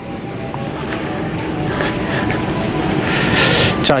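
Road traffic: a vehicle on a four-lane road going by, a steady rush that grows louder and brighter over the few seconds.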